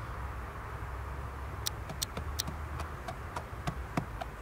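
Steady low outdoor rumble, with an irregular run of about ten sharp clicks starting about a second and a half in.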